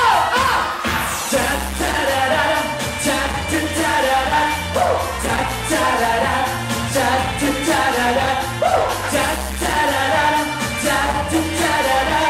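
A male singer singing a Thai pop song live into a handheld microphone over music with a steady bass and drum beat, heard through the stage's sound system.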